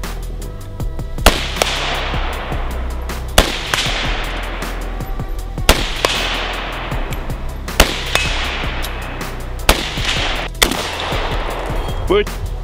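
Six gunshots roughly two seconds apart, each a sharp crack followed by a long echo across the range. The last two come closer together and are weaker. Background music with a steady beat plays throughout.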